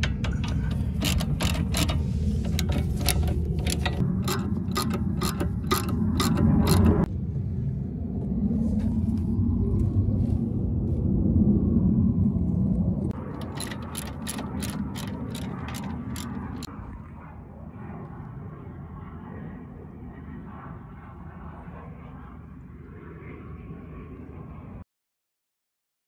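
Hand ratchet wrench clicking in quick runs of strokes while tightening the nut on a new sway bar link. The clicking stops about seven seconds in, comes back briefly about thirteen seconds in, then gives way to a quieter steady background.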